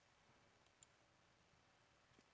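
Near silence: faint room tone, with one faint click a little before midway.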